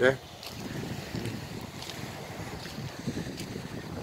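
Wind buffeting the microphone outdoors: a low, unsteady rumble with a few faint ticks.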